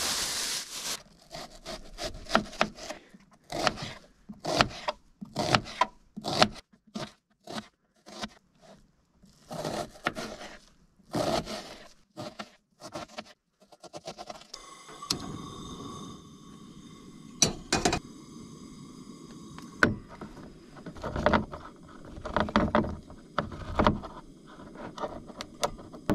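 Kitchen knife cutting an onion on a cutting board: a run of irregular, sharp cuts and knocks, spaced about half a second to a second apart. From about halfway a steady hum with several high, fixed tones comes in, with more knocks over it.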